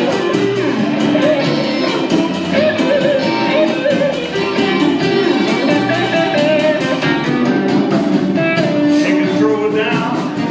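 Live band playing with electric guitars over bass and a steady drum beat.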